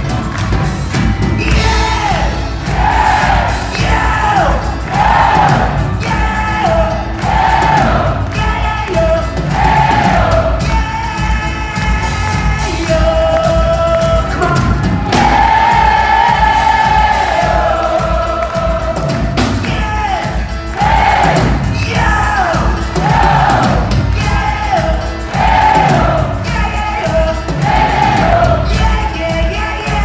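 Live rock band in concert: a lead vocal, with a long held note about halfway, over electric guitars, bass, keyboards and drums with a steady beat, heard through the PA from the audience in a large hall.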